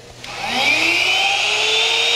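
The swing-down I.D. internal-grinding spindle on a 1967 Clausing/Covel 512H cylindrical grinder is switched on and spins up. Its high whine rises in pitch for about a second and a half, then holds steady at running speed.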